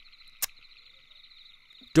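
A faint, steady chorus of calling frogs, a fine continuous trilling, as a background ambience bed, broken by a single sharp click about half a second in.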